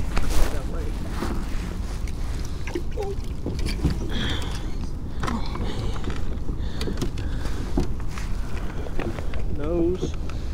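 Steady low wind rumble on the microphone, with scattered knocks and rustles as a large redfish and a measuring board are handled against a plastic kayak's deck.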